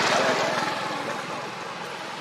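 A motor engine running with a fast, even pulse, loudest at the start and fading over the two seconds.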